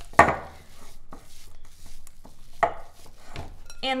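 A spoon stirring thick cookie dough in a glass mixing bowl: scraping, with several sharp knocks of the spoon against the glass, the loudest just after the start and another past halfway.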